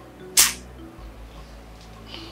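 Soft background film score, with one short, sharp click about half a second in.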